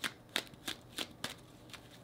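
Tarot deck being hand-shuffled overhand: a quick series of short, crisp card slaps, about three a second.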